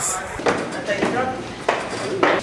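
Indistinct voices talking, broken by a few sharp knocks.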